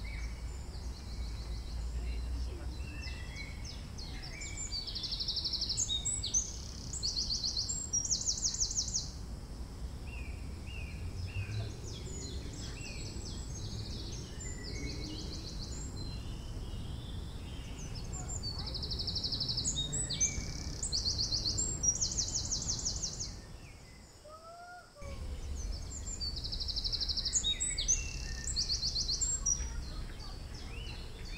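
A small songbird singing repeated phrases of fast, high trills and chirps, several times over, against a steady low outdoor rumble. The whole sound drops away briefly about three-quarters of the way through.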